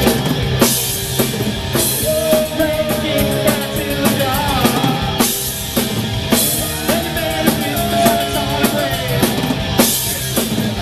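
Live rock band playing a song: drum kit with repeated cymbal crashes over electric bass and guitar, loud and steady.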